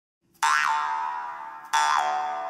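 A jaw harp plucked twice, about half a second in and again near the end. Each twang starts sharply and dies away over its steady drone, with a bright overtone sweeping up and back down.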